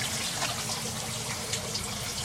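Water running and trickling steadily in an IBC tote aquaponics system, with a faint low steady hum underneath.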